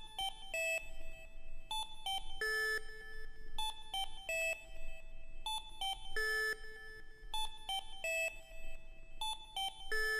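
Quiet, sparse melody of short beep-like synthesizer notes from a 1990 house track's outro, with no drums or bass. A phrase of a few notes repeats about every four seconds.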